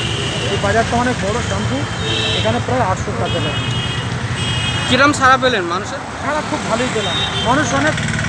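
A man talking, with street traffic behind him: a steady engine hum and a few short, high horn toots.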